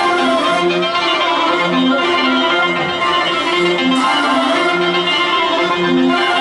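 A rock band with a backing orchestra playing live over a concert PA, a steady pattern of held, repeating notes with strings in the mix.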